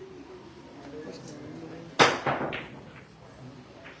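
A pool shot: the cue tip hits the cue ball hard about two seconds in with a sharp crack, followed within half a second by a couple of lighter clacks of the balls colliding.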